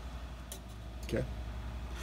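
Allen wrench working a stripper bolt loose on a steel trap-machine arm: a single faint metallic click about a quarter of the way in, over a steady low hum.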